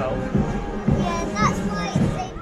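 Military marching band playing in the street, its bass drum beating about twice a second under sustained brass notes, with voices, including a child's, close by.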